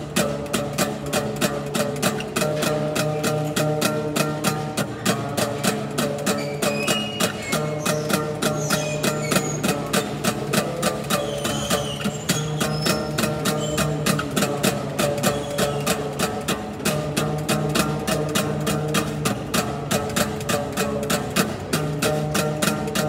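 Acoustic guitar strummed in a fast, even rhythm, its chords ringing on between strokes.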